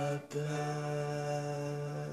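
A man's voice holding one long sung note at a steady pitch, after a brief break just after the start.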